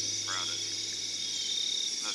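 Steady high-pitched chorus of crickets and other field insects, with a short, rapidly pulsed call about a third of a second in.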